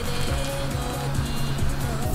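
Background music with steady sustained tones over a low pulse.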